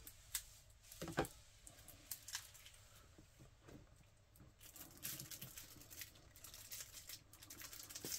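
Faint crinkling and small ticks of cellophane shrink-wrap on a boxed card deck being picked at and peeled by hand, with a few separate ticks at first and denser crinkling in the second half.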